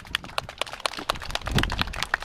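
Scattered hand-clapping from a small audience: several people clapping unevenly, about seven or eight sharp claps a second.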